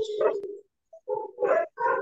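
A man's voice in short, broken fragments: a half-second utterance, a pause, then a few brief syllables.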